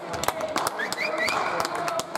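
Basketball game sounds in a sports hall: players' voices calling out, scattered sharp claps and taps, and a run of short high squeaks about a second in, typical of sneakers on the court.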